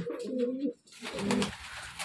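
Domestic pigeons cooing: two low coos, the second starting about a second in.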